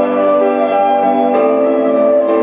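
Electric violin played through a small amplifier: a bowed melody of sustained notes that changes pitch a few times.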